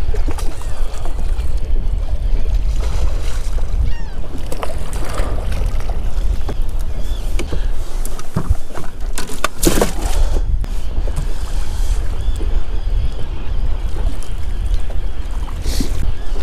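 Steady low rumble of wind and boat noise on open water, with a few sharp knocks in the boat around nine to ten seconds in as a freshly caught walleye is handled aboard.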